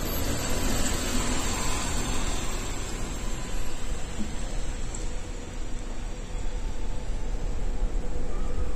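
MAN city bus driving past close by, its engine and tyre noise easing off over the first few seconds, leaving a steady low rumble.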